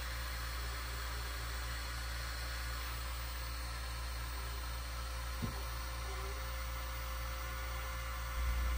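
Steady low hum and hiss of background machine or room noise, with one faint click about five and a half seconds in.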